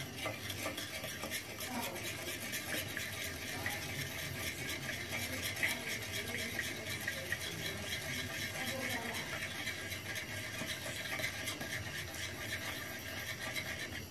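Metal spoon stirring and scraping in a small glass dish, working a wet, grainy paste of caustic soda and salt into which acid has just been poured. It is a steady scratching with many small clicks of metal on glass.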